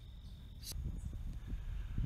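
A steady high insect drone over a low rumble and rustling of footsteps through tall dry grass, with a short swish about two-thirds of a second in.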